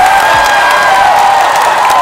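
Studio audience clapping and cheering.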